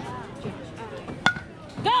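A baseball bat hits a pitched ball about a second in: one sharp crack with a brief ringing tone after it. A shout of "Go!" follows near the end, over background chatter.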